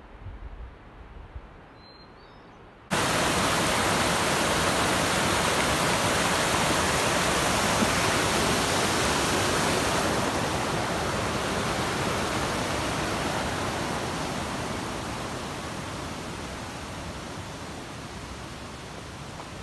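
A fast mountain creek rushing: a loud, steady roar of water that starts abruptly about three seconds in and slowly fades over the second half. Before it there is quiet outdoor air with a single short bird chirp.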